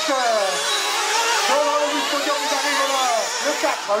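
Several small two-stroke nitro engines of 1/8-scale RC off-road buggies revving up and down as the cars race, heard as overlapping whines that rise and fall.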